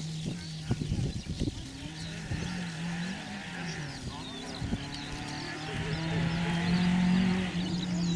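Renault Clio Sport rally car's engine at speed on a stage, heard from a distance, its note rising and dropping with gear changes and growing louder from about halfway through as the car approaches.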